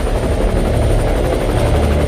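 Helicopter flying, with a sudden loud onset: a rapid, even chopping of the rotor blades over a deep rumble, with a thin high-pitched turbine whine on top.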